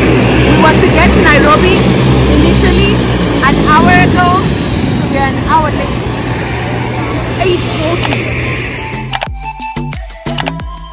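Loud, steady drone of aircraft engines with a woman's voice and other voices over it. It cuts off about nine seconds in and gives way to background music.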